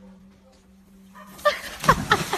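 A dog tumbling off a canal bank into the water: a short cry and then a loud splash near the end, over a faint steady hum.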